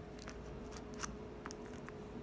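Folding knife blade slicing the seal along the seam of a cardboard box lid: a few faint scratches and sharp ticks as the blade catches and drags, over a faint steady hum.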